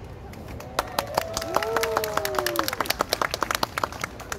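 A small audience clapping by hand as the music ends, the claps starting about a second in and coming thick and separate. In the middle one voice calls out a long cheer that rises and then falls in pitch.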